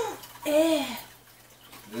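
A short wordless vocal sound, its pitch rising then falling, about half a second in, followed by a quiet room.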